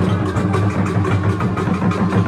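Fast, dense drumming and percussion, with a low rumble running underneath.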